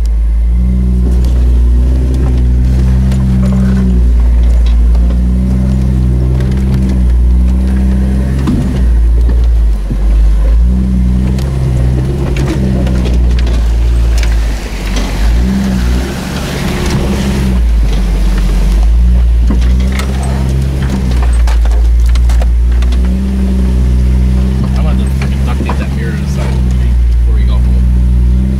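Jeep engine running at low trail speed, heard from inside the cab, its pitch rising and falling with the throttle, with scattered knocks and rattles from the body over rough ground. About halfway through a rushing hiss swells up for a few seconds, then fades.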